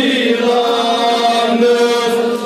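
Male voices chanting a Kashmiri devotional naat (kalaam) in long held notes.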